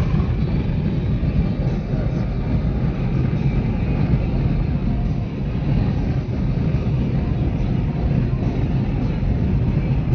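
Road and wind noise inside a vehicle cruising at highway speed: a steady, heavy low rumble.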